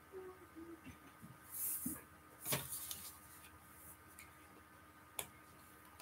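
Faint desk-handling sounds from picking up a pen and paper to write a note: a few soft knocks, a brief paper rustle about a second and a half in, and a sharp click near the end.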